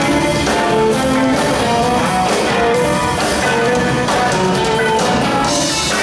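Live rock band playing: electric guitar picking a melodic lead line over drums and bass, with no singing.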